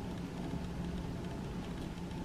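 Quiet room tone: a faint, steady background hiss with a low hum, with no distinct events.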